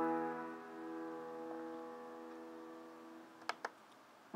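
A piano struck just before and left ringing, slowly fading away. Two quick sharp clicks of a computer mouse come about three and a half seconds in.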